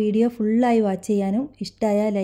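A woman speaking Malayalam, talking steadily.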